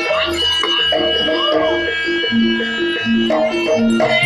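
Javanese gamelan music of the kind played for barongan dances: a quick, repeating melody of struck pitched notes, with a long high held note through the middle and a low hum in the first second.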